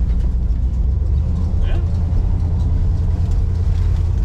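Heard from inside the cabin of a 1968 Plymouth Satellite on the move: a steady low rumble of the engine and exhaust, mixed with road noise.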